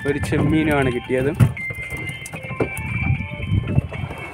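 A voice talking for about the first second, then a thin steady high tone that holds over a low rumbling background.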